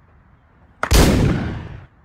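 A 2020 Anarchy Odin ASA slowpitch softball bat, broken in with about 240 hits, strikes a pitched softball. A single sharp crack comes just under a second in, then dies away over about a second. It is solid contact that sends the ball out as a line drive.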